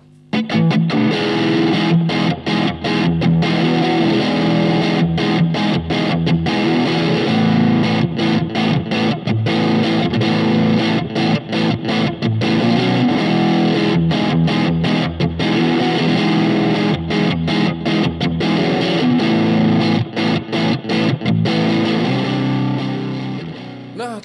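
Electric guitar, a Squier Telecaster, played through a Boss Blues Driver BD-2 overdrive pedal: overdriven blues-rock chords and riffs with frequent brief stops between phrases, dying away just before the end.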